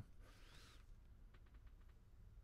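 Near silence: faint room tone with a low hum, a brief soft hiss in the first second and a few faint ticks about a second and a half in.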